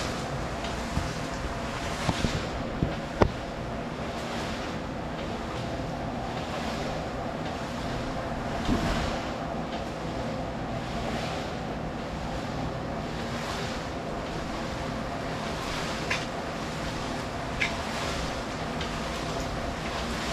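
A steel trowel scraping in repeated strokes over freshly placed concrete, finishing the floor surface, against a steady mechanical hum. A few sharp clicks stand out, the loudest about three seconds in.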